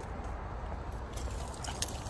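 Steady low background rumble with a few light clicks and rustles in the second half, from a handheld phone being moved around.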